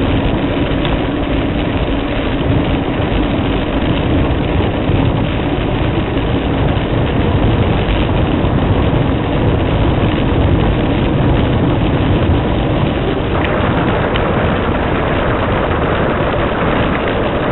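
Steady rush of wind over the microphone with tyre noise from a fixed-gear bicycle rolling on 700x40 tyres along asphalt.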